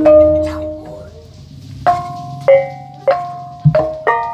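Banyumasan gamelan music: bronze kettle gongs (bonang) struck with mallets, their notes ringing on over a low gong hum. The playing thins out about a second in, then picks up again with single strokes about every half second.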